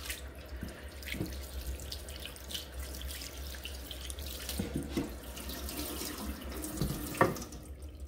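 Kitchen tap running into a sink while a large bowl is washed by hand, water splashed over it, with a few light knocks.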